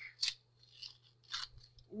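A few short, soft rustles of paper as a bottle's paper seal liner is handled and turned over in the fingers.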